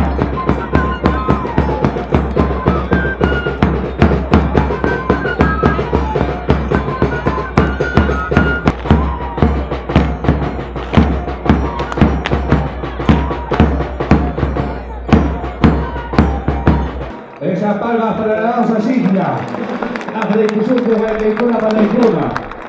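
Traditional Andean band music for the Cachampa dance: a steady drum beat under a high melody line. It cuts off suddenly about three-quarters of the way through, and a voice follows.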